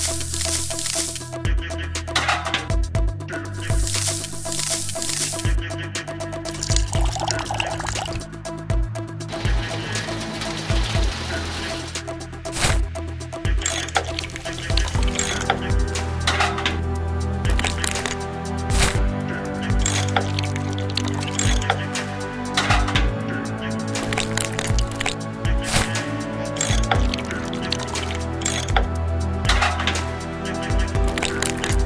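Background music, with sand poured from a small metal bucket into a miniature cement mixer's drum near the start, heard as two short rushing pours.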